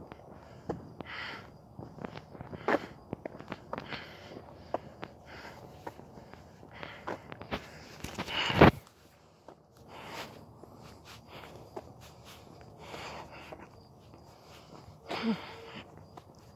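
Footsteps of a person walking, with irregular clicks and rustles from a handheld camera being carried. One much louder knock comes a little past halfway.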